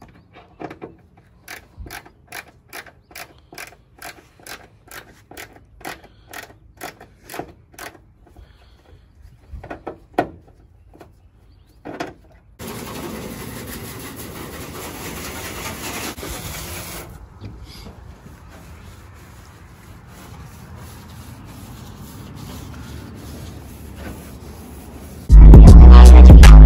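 A hand scrub brush scrubbing a soapy pickup tailgate in quick regular strokes, about two a second. About twelve seconds in, a garden-hose spray nozzle starts spraying water into the truck bed with a steady hiss, loud at first and then softer. Near the end, loud music with a heavy beat cuts in.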